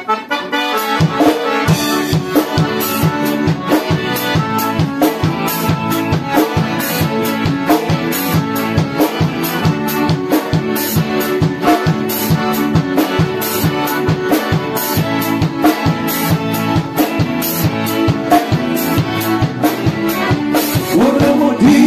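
Live chamamé band playing an instrumental introduction, with two piano accordions leading over acoustic guitar and a drum kit keeping a steady beat. The music starts right after a short pause.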